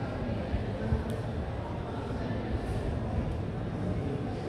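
Indistinct chatter of people over a steady low rumble of room noise.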